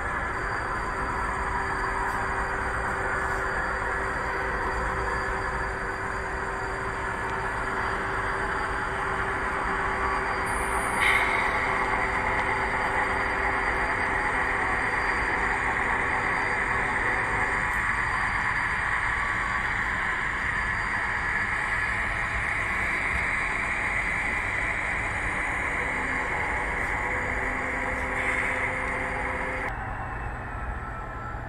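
Model freight train running: a steady rumble of metal wheels rolling on the track, with the steady engine drone of the model diesel locomotives. About a third of the way in, a brighter hiss-like rolling sound comes in and holds to the end.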